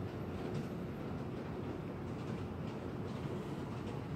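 Steady low room rumble with a faint steady hum, and no separate sounds from handling.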